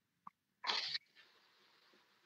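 A faint mouth click, then one short breathy hiss of under half a second from a man, a quick breath noise rather than speech.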